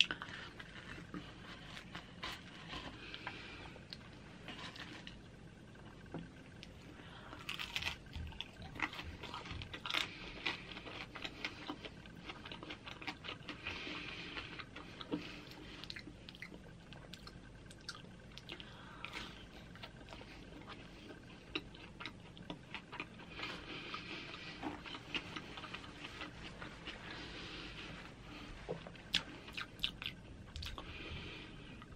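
Close-up chewing and biting of crisp flatbread pizza, with irregular crunches and wet mouth clicks.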